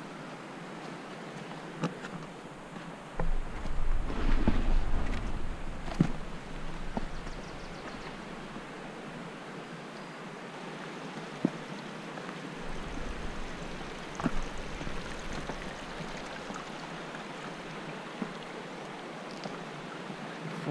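Steady rushing of a mountain stream, with a few footstep clicks on the trail. Wind rumbles on the microphone in two spells, about three seconds in and again about thirteen seconds in.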